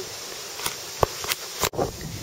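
Faint steady background hiss with a few light clicks and knocks from a handheld camera being moved, then an abrupt splice with a brief dropout about three-quarters of the way through.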